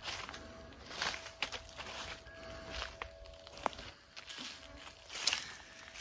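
Footsteps crunching on dry bamboo leaf litter, irregular and unhurried, about seven steps or crackles spread over the few seconds.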